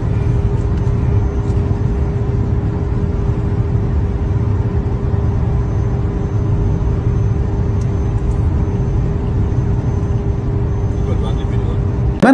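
Steady low rumble of road and wind noise recorded from a vehicle driving along a highway, with a steady hum running through it.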